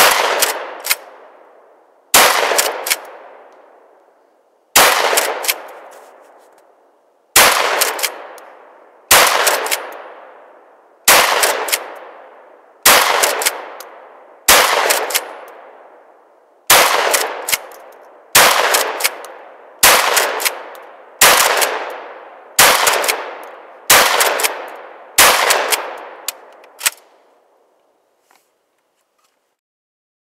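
A UTS-15 12-gauge pump-action bullpup shotgun is fired fifteen times in a steady string, one shot every one and a half to two and a half seconds. Each report rings out and fades over a second or two, with a quick mechanical clack after each shot as the pump is worked.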